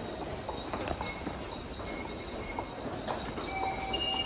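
Footsteps on a hard floor over the steady hubbub of a busy underground station concourse, with faint thin high tones coming and going.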